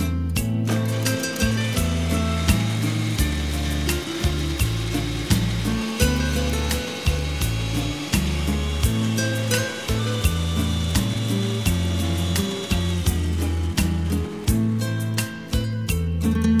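Electric kitchen mixer grinder running with a steady whine and grinding noise, then cutting off about three-quarters of the way through, under background music with a steady beat.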